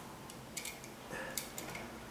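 A few faint, scattered clicks and light handling noises from hands working a stripped copper wire against a wall light switch's terminals.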